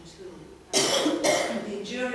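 A person coughing twice in quick succession, loud, much louder than the speech around it.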